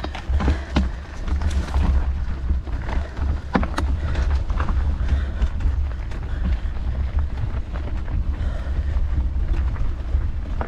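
Wind buffeting the camera's microphone in a steady low rumble while a mountain bike climbs a loose, stony gravel track, tyres crunching over the stones with scattered sharp clicks.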